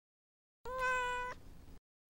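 A single short, meow-like call at one steady pitch, starting just over half a second in after dead silence and lasting under a second, trailing off faintly.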